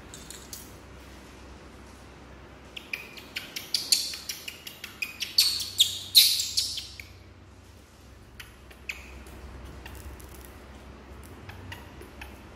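Young macaque squeaking: a run of short, high-pitched chirping calls for about four seconds in the middle, loudest just before it stops.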